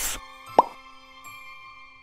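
Intro jingle with held chime-like notes that fade away, opening with a quick swoosh. A short rising 'bloop' pop effect lands about half a second in.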